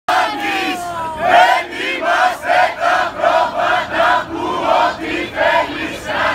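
A crowd of protesters chanting a slogan in unison, loud and rhythmic at about three syllables a second.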